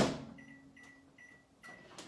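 Microwave oven door shut with a sharp clunk, followed by four short, evenly spaced keypad beeps as a 20-second heating time is keyed in to warm frothed milk.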